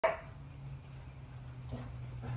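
A dog barks once, sharply, right at the start, over a steady low hum.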